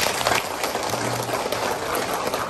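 A roomful of seated people applauding, a steady patter of many hands clapping.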